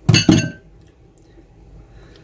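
Dishes clinking together at the sink: two quick, sharp clinks in a row at the start, with a brief ringing after them.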